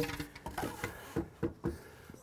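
A long spirit level handled against a wooden stair frame: a few light, irregular knocks and taps as it is moved into place.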